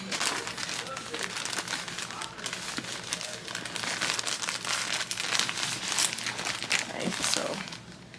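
Plastic poly mailer bag crinkling and rustling as a crochet doll is pushed and wrapped into it.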